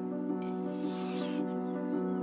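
A knife blade drawn along a sharpening stone: one long stroke starting about half a second in, lasting about a second, over background music of sustained low tones.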